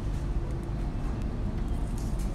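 Steady low background rumble with a faint steady hum.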